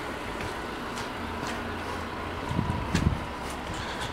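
Steady outdoor background noise with a low, even hum that settles in about a second in, and a few soft low bumps between two and a half and three seconds in.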